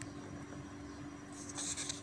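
Paper pages of a printed wiring-diagram book rustling as they are handled and turned, soft at first and louder near the end, over a faint steady hum.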